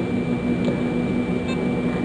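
Steady background hiss with a low hum and a faint, thin high-pitched whine. No distinct event stands out.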